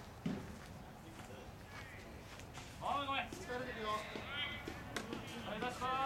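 Baseball players shouting high-pitched calls across the field, starting about three seconds in and running in several short shouted phrases to the end.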